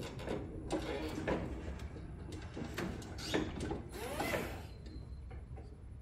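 Toyota electric reach truck running: clicks and rattles of its mechanism over a steady low hum, with a motor whine that rises and falls twice.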